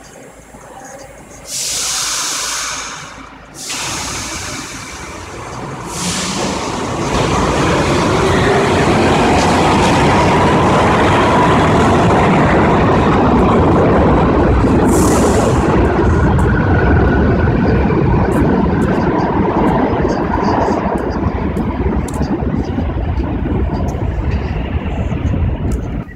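New York City subway train in the station: a few short bursts of air hiss in the first seconds, then the loud, steady rumble and whine of the train moving along the track for most of the rest.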